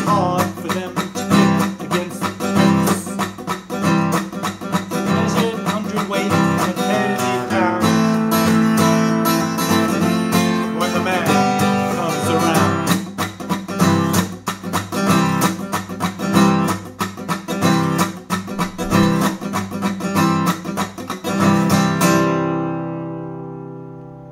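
Acoustic guitar strummed steadily in a driving rhythm, full chords ringing. About 22 seconds in the strumming stops and the last chord rings out and fades.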